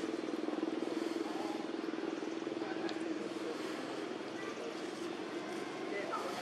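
A steady low hum from a running engine, with outdoor background noise.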